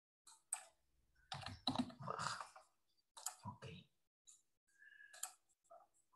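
Faint computer keyboard typing and clicks, in irregular short bursts.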